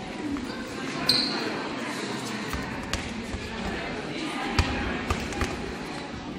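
A few separate thuds of footballs hitting a gym floor, the sharpest about four and a half seconds in, over voices echoing in the hall.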